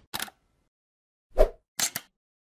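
Short pop and click sound effects of an animated logo intro: a brief click near the start, a louder pop with a low thump about a second and a half in, and a quick double click near the end.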